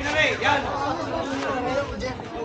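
Several people talking at once: overlapping casual chatter from a small group close by.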